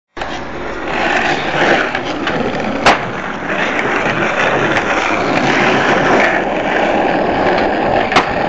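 Skateboard wheels rolling on street pavement, a continuous rough rumble, with a single sharp clack about three seconds in.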